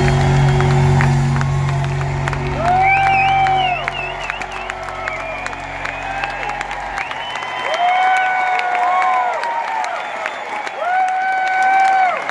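A live rock band's closing chord ringing out and dying away over the first seven seconds or so, under a large concert crowd applauding and cheering, with several long whoops rising above the clapping.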